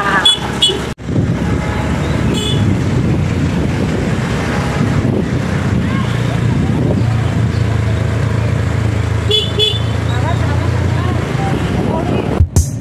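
Motorcycle engine running steadily under road and wind noise on a ride, with about three short horn toots, near the start, a couple of seconds in and near the end.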